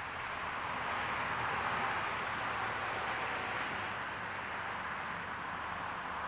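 Steady hiss of roadside noise on a police car camera's audio, swelling a little over the first couple of seconds and then easing off.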